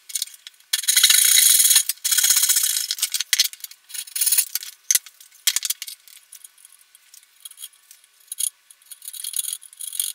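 A hand saw cutting through the wooden guitar body at the neck pocket: two long strokes about one to three seconds in. After them come scattered clicks and knocks of the workpiece and tools being handled on the bench.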